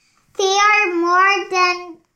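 A child's voice reading aloud in a slow, drawn-out, sing-song way, starting about half a second in.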